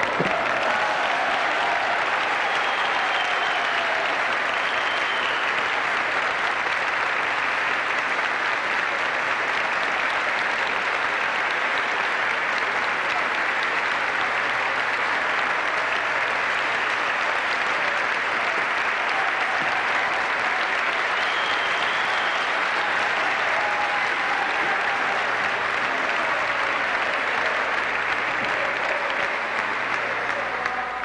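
Large audience clapping in sustained, steady applause, with a few voices faintly audible over it.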